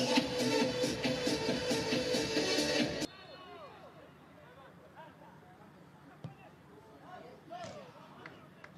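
Loud music with a singing voice, cut off abruptly about three seconds in. Then quiet open-air sound from the pitch: faint scattered shouts of players and a single sharp thump about six seconds in.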